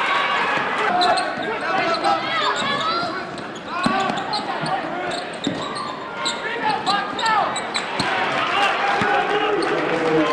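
Basketball game in a gym: the ball bouncing on the hardwood floor a few times and sneakers squeaking, over steady crowd chatter in a large echoing hall.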